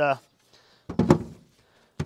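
A strapped polystyrene beehive set down with a single dull thump on a wooden table, about a second in.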